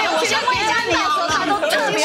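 Speech only: several voices talking over one another, with light background music.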